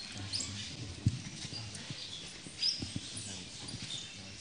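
People kneeling down on a stone floor: scattered soft knocks and shuffling, with the rustle of robes and a few short high chirps.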